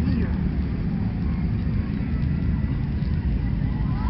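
Wind buffeting an open-air phone microphone: a loud, unsteady low rumble with no distinct events.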